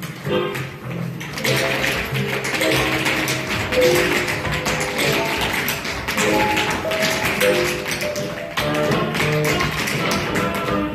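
Tap shoes striking a studio floor in fast, dense footwork over recorded Latin-style music, the taps thickest through the middle and thinning near the end.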